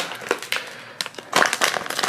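Printed foil blind bag crinkling and crackling as hands handle it and begin tearing it open, getting louder about a second and a half in.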